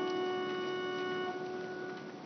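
Pipe organ holding a sustained chord that thins out and fades near the end, closing its short introduction to the sung psalm response.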